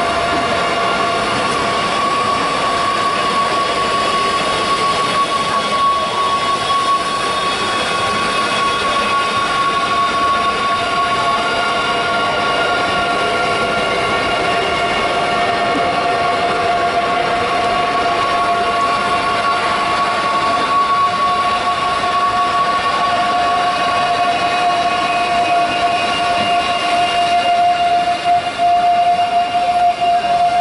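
Electronic score: a dense, noisy drone with two steady held high tones, loud and unbroken.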